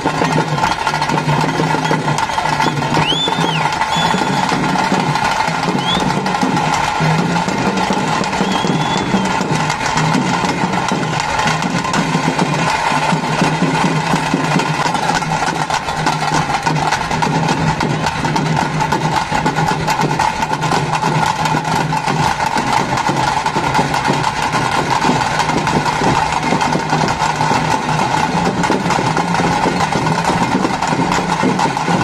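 Loud, continuous fast drumming on tase, the stick-beaten drums that accompany a Tulu Nadu tiger dance (pili vesha), with a steady rapid beat.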